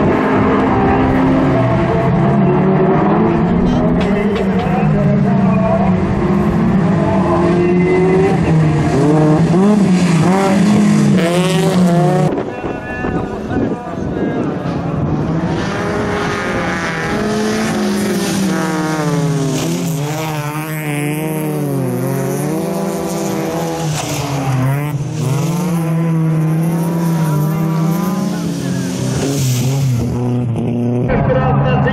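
Engines of several bilcross race cars being revved hard, their pitch rising and falling as the drivers accelerate and shift. About twelve seconds in the sound cuts abruptly to cars racing through a bend, with the engines again rising and falling.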